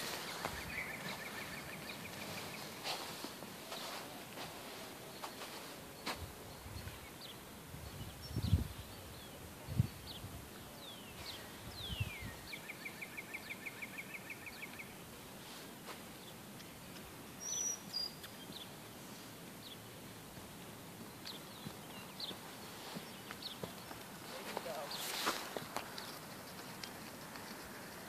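Quiet outdoor background with small birds singing: two trills of rapidly repeated notes, one near the start and one about halfway through, plus scattered chirps and a high whistle. A few low thumps come in the middle, and a brief rush of noise comes near the end.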